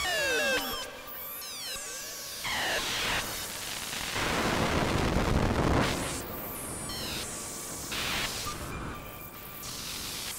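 Make Noise 0-Coast synthesizer playing sci-fi bleeps and bloops: quick falling and rising pitch sweeps with octave-shifted copies in the first few seconds, then a loud swell of noise about four to six seconds in, followed by shorter noise bursts. The synth runs through a pitch-shifting octave effect, hall reverb and reverse delay.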